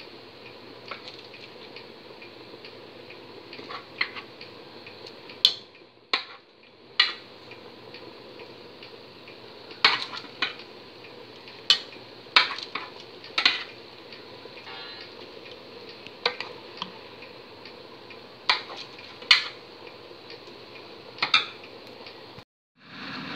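Irregular sharp clinks of a utensil against a cooking pot as baked meatballs are added one at a time to boiling tomato sauce, over the steady hiss of the bubbling sauce.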